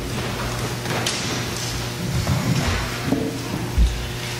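Guitars and stage gear being handled as musicians set up: scattered knocks and soft clatter over a steady low hum, with one heavy thump near the end.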